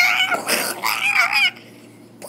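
A child's voice giving a high-pitched, wavering cry, like a whimper or wail, for about a second and a half before breaking off.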